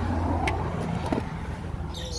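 Low steady rumble of road traffic, with a single sharp click about half a second in as a glass shop door is pushed open.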